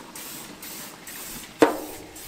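Aerosol canola oil cooking spray hissing steadily onto hot grill grates for about a second and a half, then a short sharp sound near the end.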